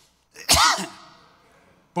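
A single loud sneeze about half a second in: a sharp sudden burst that trails off over the next second.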